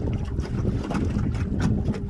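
Wind rumbling on a phone microphone over the steady hum of a canoe's electric trolling motor.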